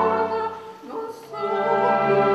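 Operatic singing with a chamber string orchestra: a held note fades away, there is a short lull about a second in, and then the orchestra comes back in with sustained notes.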